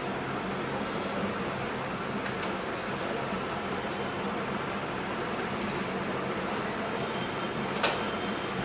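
Steady, even hiss with a low hum as spinach puree cooks in a pan on the stove. One short knock near the end, from the wooden spatula against the pan.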